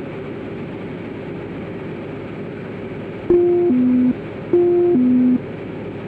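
Steady drone of a light airplane's engine and cabin heard through the headset intercom; about three seconds in, a loud electronic alert tone of two notes, high then low, sounds twice in a row.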